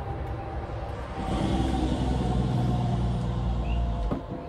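A road vehicle driving past, its engine rumble and tyre noise swelling about a second in and easing off slightly near the end.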